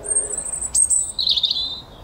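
A small songbird singing: a thin, very high note held for most of a second, then a shorter, lower warbling trill.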